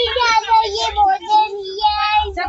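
A small child singing in a high voice, holding long drawn-out notes.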